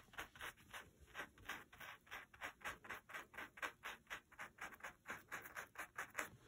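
Faint brushing of a stiff scrubby brush worked back and forth on textured fabric, in quick short strokes about four or five a second, scrubbing paint into the weave to blend it.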